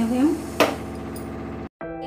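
A single sharp click or knock about half a second in, over a steady low hum. The sound cuts out abruptly near the end.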